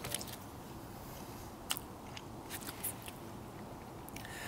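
A person chewing a mouthful of soft cooked kokanee salmon, faint, with a few short mouth clicks scattered through.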